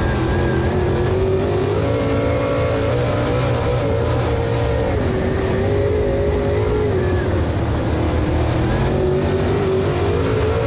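A Super Late Model dirt-track race car's V8 engine at racing speed, heard from inside the cockpit. The engine note climbs about two seconds in, drops, climbs again, falls, and climbs once more near the end as the throttle is worked through the laps.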